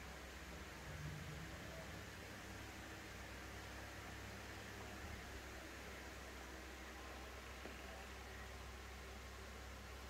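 Faint steady hiss with a low hum: room tone, with no distinct aircraft or other sound.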